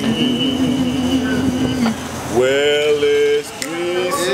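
Men's voices singing a cappella in harmony: a long low note held with vibrato breaks off about two seconds in, then new notes glide up into a held chord.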